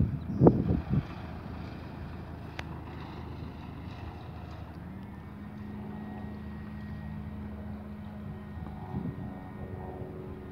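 A few gusts of wind buffet the microphone near the start. From about halfway, a light aircraft's engine and propeller drone steadily: a 1981 Piper PA-28 Archer with its four-cylinder Lycoming engine, rolling on the runway after landing.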